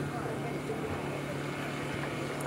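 Steady, low-level background noise with a faint low hum, and no speech.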